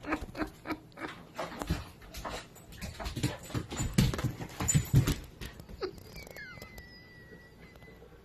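German shepherd–husky puppy pawing and splashing at a water bowl and scrabbling on a wet floor: a quick run of knocks and slaps, heaviest around four to five seconds in. Near the end a thin, high, steady whine.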